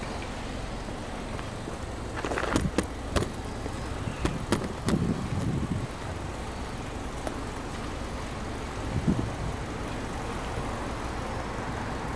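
Subaru Legacy's EJ25 2.5-litre flat-four idling steadily, heard at the exhaust. A few sharp clicks come between about two and five seconds in.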